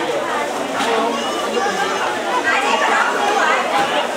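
Many people talking at once: the overlapping chatter of a crowded room, with no single voice standing out.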